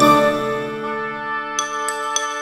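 Background music: a held, fading chord, with a few bright bell-like chimes coming in near the end.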